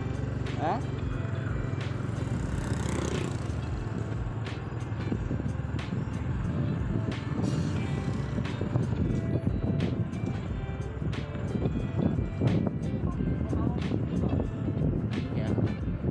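Motor scooter engine running on the move, with wind and road jolts on the microphone as it rides over a rough, wet road; music plays over it. The ride gets rougher and louder from about five seconds in.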